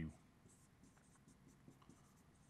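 Faint scratching and light ticks of a pen writing by hand on a board.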